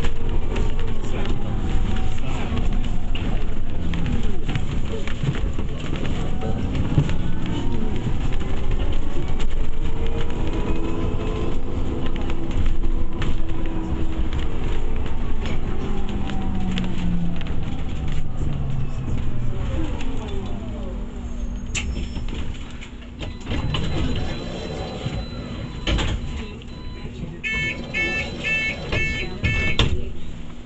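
London bus engine and drive heard from inside the passenger saloon, its pitch rising and falling as the bus moves through traffic. It quietens as the bus slows and stands at a stop, and near the end a run of repeated electronic beeps sounds.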